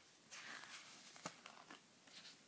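Near silence: quiet room tone with a faint brief rustle and a soft click.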